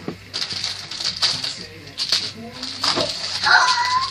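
A dog whining briefly in a high, bending tone near the end, over the crinkling of a foil snack packet being handled.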